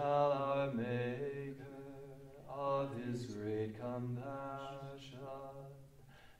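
Voices of a religious community singing a Latin-style Sapphic hymn together to a slow, chant-like melody in English, with held notes and a short breath between phrases about two and a half seconds in.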